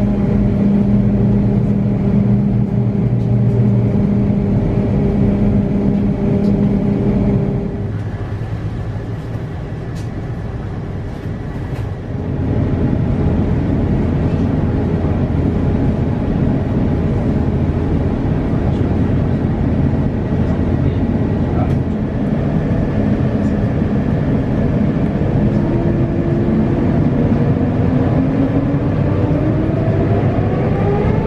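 Airbus A350 cabin noise: a steady rumble and hum from the Rolls-Royce Trent XWB engines while the aircraft is pushed back and taxis, quieter for a few seconds about a third of the way in. Near the end a whine rises steadily in pitch as the engines spool up for takeoff.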